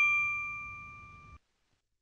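A single bell-like chime, struck once and ringing out with a clear tone that fades away over about a second and a half.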